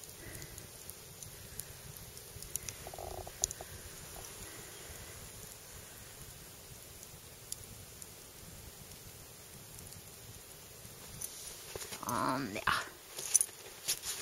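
Wood campfire crackling faintly: scattered small pops over a low steady hiss. Near the end, a short vocal sound breaks in.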